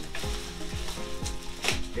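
A clear plastic bag crinkling and rustling as it is pulled off a new humidifier, with one louder rustle near the end, over background music with a steady beat.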